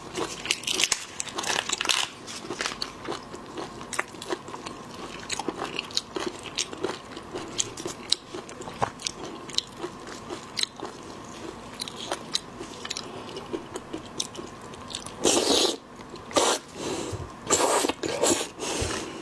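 Raw soy-sauce-marinated shrimp being pulled apart and peeled by plastic-gloved hands: many small, sharp crackles and clicks of shell and flesh separating. Near the end come a few louder bursts as the shrimp is bitten and chewed.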